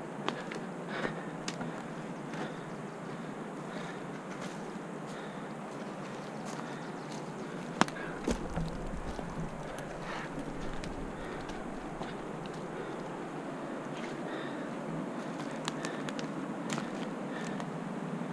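A hiker climbing a steep forest slope with a handheld camera: scattered footsteps and rustling over a steady faint noise, a sharp click about eight seconds in, and a brief low rumble on the microphone just after it.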